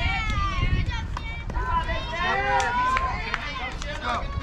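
Several high-pitched voices calling out and chattering over one another, over a steady low rumble.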